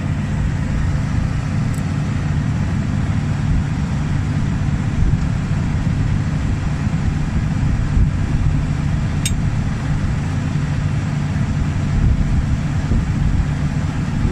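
A John Deere combine's engine running steadily with a low, even drone, while its hydraulics power a reverser that rocks the feed accelerator backwards and forwards, adding a few dull bumps.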